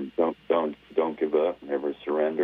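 Speech only: a voice talking over a telephone line, sounding narrow and thin.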